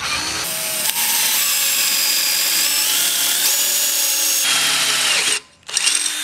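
Power drill running under load, its bit boring a hole through the side of a metal scooter deck: a steady whine for about five seconds that stops suddenly, then a brief second burst near the end.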